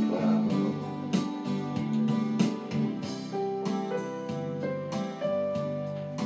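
Instrumental music: a keyboard playing a slow melody of held single notes over sustained chords, with a steady beat.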